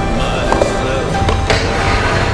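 Soundtrack music with a skateboard sliding along a metal handrail under it, and one sharp clack from the board about one and a half seconds in.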